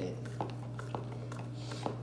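A few light clicks and taps from handling kitchen utensils, over a steady low hum.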